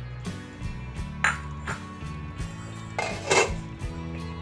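A few short clinks and knocks of kitchen utensils against a cooking pan, the loudest a little over three seconds in, over steady background music.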